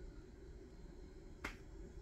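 Faint room tone with a single sharp click about one and a half seconds in.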